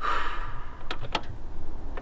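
A breathy hiss, then two sharp clicks about a quarter second apart: a hand at the controls and key switch of a JCB skid steer cab, with the diesel engine not yet cranked.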